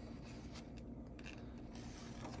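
Faint rustling of a paper instruction booklet being handled as its pages are lifted and turned, over a low steady room hum.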